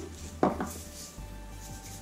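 Soft background music with a single sharp click about half a second in, from small kitchen items being handled.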